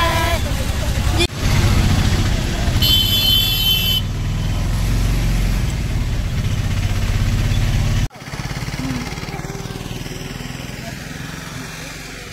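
Three-wheeler auto-rickshaw engine running steadily as it is ridden through town traffic, heard from inside the cab, with a horn sounding for about a second around three seconds in. After a sudden cut near eight seconds the engine is gone and only a quieter, even background remains.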